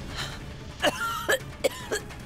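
A sick woman's coughing fit: four short, harsh coughs in quick succession, starting a little before halfway.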